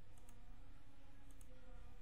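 Computer mouse clicking twice, about a second apart, each a faint double tick of press and release, over a steady low hum.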